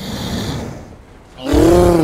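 A breathy sniff, then about a second and a half in a loud call from the cartoon polar bear that rises and falls in pitch.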